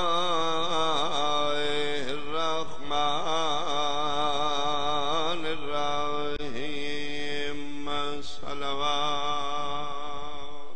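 A man's voice chanting a melodic recitation through a microphone, holding long notes with a wavering vibrato and sliding between pitches.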